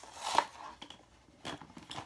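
A small cardboard carton being torn open by hand: a short ripping of the card in the first half-second, then a few light clicks of cardboard as the flap is pulled back.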